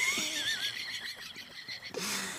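A high, wavering laugh that trails off and fades away.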